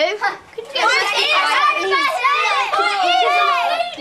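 Several children's voices at once, high and overlapping, with no clear words. There is a short lull about half a second in.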